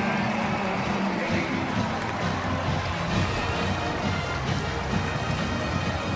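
A band playing music in a stadium over steady crowd noise.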